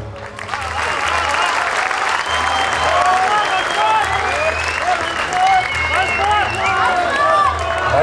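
Audience applauding, with many voices in the crowd calling out over the clapping, and a low hum underneath.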